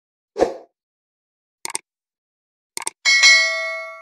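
Sound effects of a YouTube subscribe-button animation: a short swoosh, then two quick double clicks about a second apart, then a bright bell ding about three seconds in that rings on and fades slowly.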